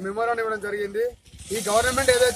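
A man speaking in a steady stream, with a short pause a little after a second in. A stretch of high hiss comes in near the end, under his voice.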